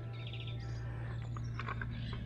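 Birds chirping in short, quick calls over a steady low hum, with a few faint clicks near the end.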